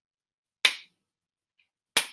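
One sharp hand smack, a high-five, about half a second in, dying away quickly; a short click follows near the end.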